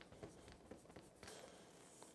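Near silence, with faint, light scratches of a fingertip rubbing around in a patch of pencil graphite on paper.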